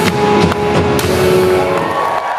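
Loud live Eurodance music from an arena stage: a held chord with sharp drum hits about half a second apart.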